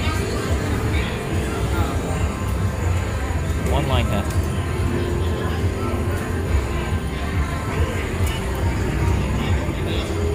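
IGT Enchanted Unicorn video slot machine spinning its reels in repeated paid spins, its spin tones and music over a steady casino-floor din with voices in the background.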